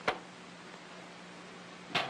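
Steady low hum and hiss of an old film soundtrack, with a sharp click just after the start and another near the end.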